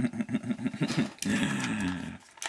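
A man's voice: quick bursts of laughter, then a low held vocal sound lasting under a second near the end.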